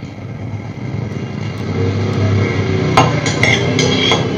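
Low steady hum with a few sharp clinks in the last second, a metal spoon tapping a glass tumbler of water, heard through hall loudspeakers.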